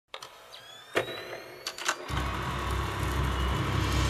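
Film projector sound effect: a few sharp mechanical clicks over a faint rising whine, then about two seconds in the projector motor starts up and runs with a steady low hum that keeps growing louder.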